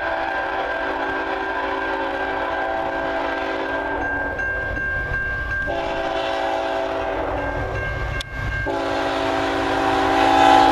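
Horn of a CN ET44AC diesel locomotive sounding for a grade crossing: two long blasts, then a third beginning near the end. The train grows louder as it approaches.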